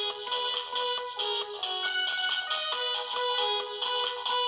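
Portable electronic keyboard played with both hands: a quick, rhythmic melody of short notes over held notes, the sound high and thin with almost no bass.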